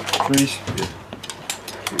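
Pistol cartridges clicking as they are handled and pressed into a pistol magazine: a scatter of small, sharp metallic clicks, with a man's voice briefly near the start.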